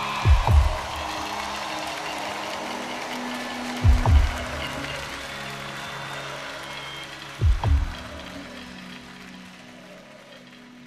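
Live band music: sustained low synthesizer tones with a heavy double thump about every three and a half seconds, gradually fading.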